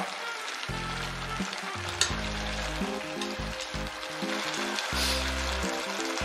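Beef and maitake simmering and sizzling in an open stainless pressure-cooker pot as the sweet soy sauce is boiled down, stirred with chopsticks, with a sharp click about two seconds in. Background music plays underneath.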